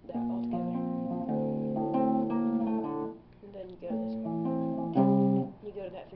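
ESP LTD electric guitar tuned to drop D playing a chord riff: ringing chords for about three seconds, a short break, then a second phrase that ends with its loudest chord about five seconds in.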